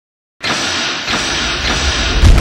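Intro sound effect: after a brief silence, a dense rushing noise starts abruptly about half a second in and holds steady.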